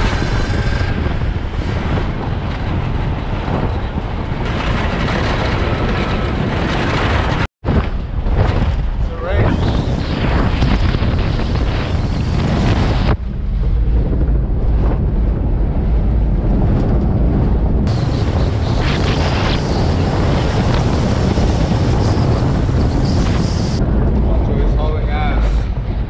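Strong wind buffeting the microphone in a loud, continuous rumble, with sea surf beneath. The sound drops out for a moment about seven seconds in and changes abruptly a few times where shots are cut together.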